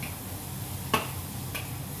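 Wood-fired wok cooking: a few sparse, light clicks over a steady low hum.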